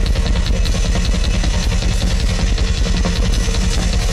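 Rock drum kit played live through a concert PA in a drum solo: a rapid, even run of strokes over a heavy bass drum.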